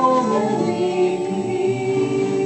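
A small group of mixed voices singing a Christmas carol together to a strummed acoustic guitar, holding one long note through most of the stretch.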